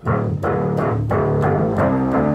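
Overdriven electric guitar from a 1959 Gibson Les Paul Junior TV model, played with deep bass notes underneath. The bass comes from an offset gold-foil pickup on the three low strings, split off into a 1966 Ampeg B-15 bass amp. A note is struck hard at the start and rings, and the notes change about one and a half seconds in.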